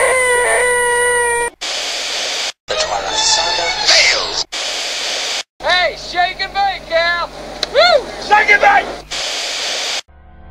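A man's voice holding a loud, flat, nasal "eeeeeh", the "most annoying sound in the world" gag, until it cuts off sharply about a second and a half in. Then a run of short, abruptly cut voice clips, with repeated rising-and-falling squeals in the second half.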